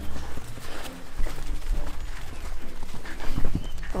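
Shetland pony's hooves and people's footsteps walking on arena sand: soft, irregular steps over a low rumble.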